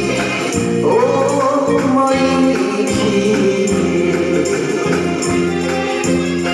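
A woman sings a Japanese enka ballad through a microphone over a live band of drum kit and electronic keyboards. About a second in she holds a long wavering note, then the band plays on alone near the end.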